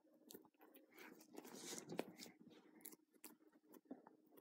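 Faint scattered clicks and scrapes of a scalpel cutting through the membrane while a rabbit's skin is pulled back over its neck.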